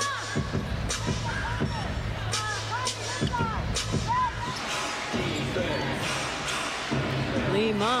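Live court sound of a pro basketball game: a basketball bouncing in irregular strikes and sneakers squeaking in short chirps on the hardwood, over a steady low arena hum.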